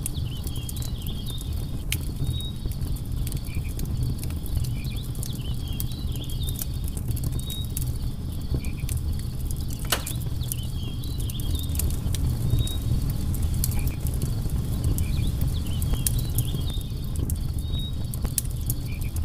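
Wood campfire crackling and popping over a low, steady rumble of flames, with a sharper pop about ten seconds in. Short high chirps recur in the background.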